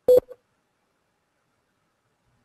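A single short, sharp click-like sound with a brief tonal ring, about a tenth of a second in, and a fainter one just after; then silence.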